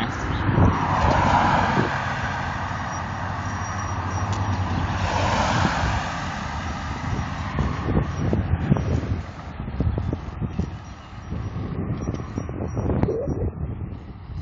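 Road traffic and wind noise heard through a phone's microphone while cycling: cars go by with two swells early on, and wind buffets the microphone with uneven low thumps in the second half.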